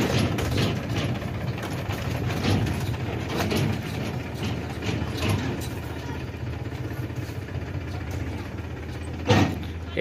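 Powertrac Euro 50 tractor's diesel engine running as it pulls a loaded tipping trailer, with loose clanking and rattling from the trailer, growing fainter as it moves off. A brief loud knock near the end.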